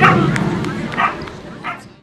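A dog barking in three short, high yips: one at the start, one about a second in, and one near the end, over a low murmur of voices that fades away at the end.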